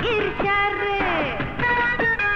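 Bangla film song: a woman sings a long held note over the instrumental backing, then the melody moves in quicker short notes near the end.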